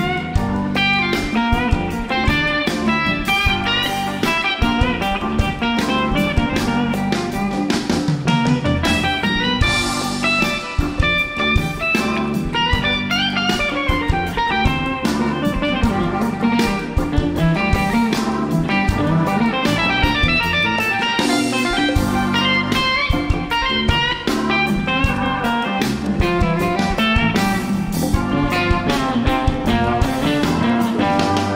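A live rock band plays an instrumental jam, led by electric guitar over five-string electric bass and a drum kit keeping a steady beat.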